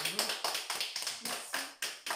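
A small audience applauding: many hands clapping out of step, each clap distinct.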